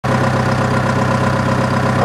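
Diesel engine of a Hyster H110XM 11,000 lb forklift idling steadily.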